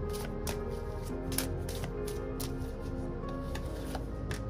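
A deck of cards being shuffled by hand, a run of quick irregular card clicks and flicks, over background music with long held notes.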